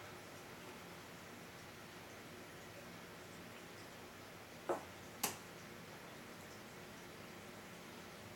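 Faint room tone, broken about five seconds in by two short knocks half a second apart, the second the sharper: a Glencairn-style whisky tasting glass set down on a wooden tabletop.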